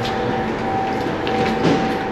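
Steady machinery drone on a ferry's enclosed car deck, with a constant mid-pitched hum running under it.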